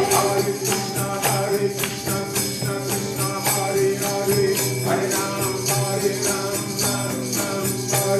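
Kirtan music: small hand cymbals jingling on a quick steady beat over a held drone note, with acoustic guitar and little or no singing.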